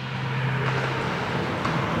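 Steady background hum and hiss of an indoor ice arena, with a low steady tone through about the first second.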